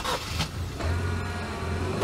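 Car engine running steadily, heard from inside the cabin as a low hum.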